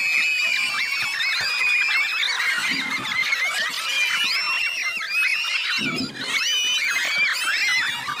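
A crowd of spectators shrieking and cheering, many high-pitched voices overlapping without a break.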